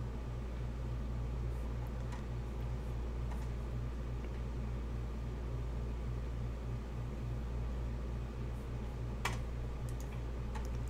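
Steady low machine hum with a slight pulsing, and one sharp click about nine seconds in.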